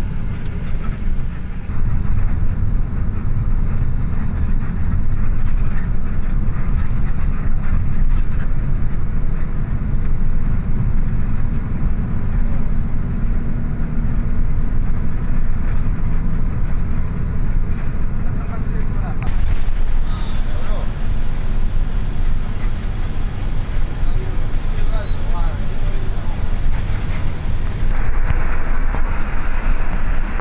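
Steady engine and road rumble heard from inside the cabin of a moving long-distance coach bus. The tone of the rumble changes abruptly a couple of times.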